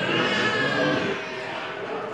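A single bleat from a farm animal, a call of about a second that sags slightly in pitch, over a background murmur of voices.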